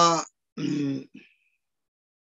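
A man clearing his throat about half a second in, a short rough voiced sound with a brief catch after it, following the tail of a drawn-out spoken syllable.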